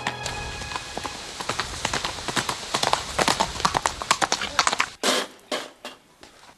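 A rapid, irregular clatter of sharp knocks, with a louder short burst about five seconds in.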